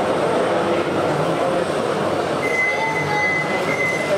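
Model train running on a layout amid the steady chatter of a busy exhibition hall. A thin, steady high squeal sets in a little past halfway and holds.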